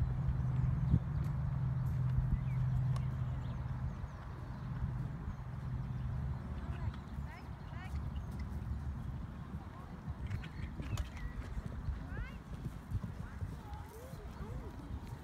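Horse cantering on a sand arena, its hoofbeats coming as irregular low thuds. A steady low hum underneath fades out about six seconds in.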